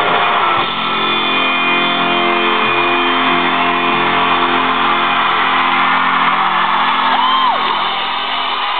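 Live band with electric guitar playing pop-rock in an arena, with the crowd screaming and cheering over it. The sound is loud and muffled, with no treble.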